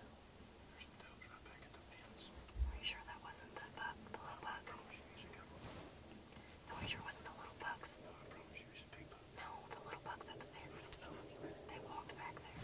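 Hushed whispering by people keeping quiet, in several short runs, with one dull bump about two and a half seconds in.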